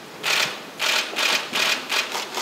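Press photographers' camera shutters firing in quick succession, short sharp clicks about two to three times a second.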